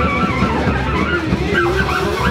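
Live band playing: saxophone, electric guitar, upright double bass and drum kit together, with the saxophone line bending and wavering in pitch.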